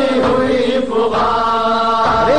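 A noha, an Urdu mourning elegy for Imam Hussain, chanted over a horn loudspeaker, the voice holding long drawn-out notes with a short break about a second in.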